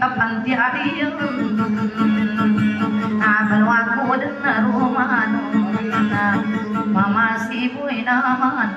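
Banjar dayunday music: a voice singing a wavering, ornamented melody over plucked panting lute accompaniment with a steady low drone.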